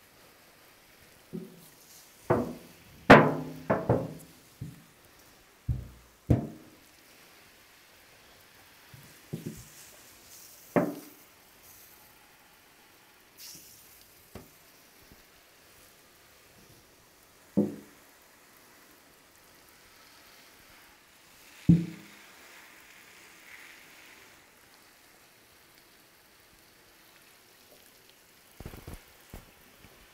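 Large steel drum collapsing under atmospheric pressure as the steam inside condenses under a cold hose spray: a run of loud metallic bangs and crumples, the loudest about three seconds in, then single bangs every few seconds as the walls keep buckling. Faint hiss of the water spray between the bangs.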